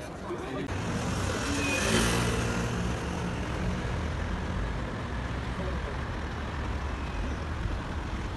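City street traffic: a motor vehicle drives past, loudest about two seconds in, and a low engine hum and traffic noise carry on after it.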